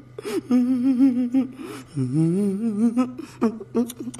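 A man humming a short tune in a wavering voice, then sliding up on a rising note, with a few clicks near the end.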